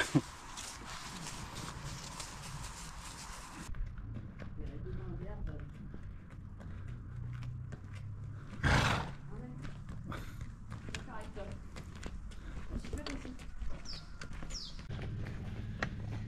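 A donkey's hooves clopping on an asphalt road as it is led along, a quick run of light ticks, with a short loud burst of noise about nine seconds in.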